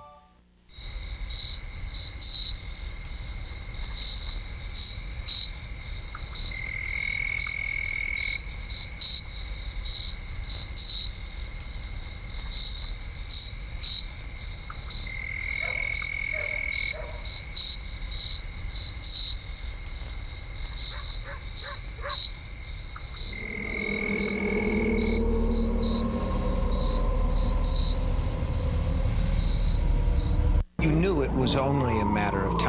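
Steady night chorus of insects, with a higher call repeating three times, about nine seconds apart. A lower, pitched sound joins about three-quarters of the way through.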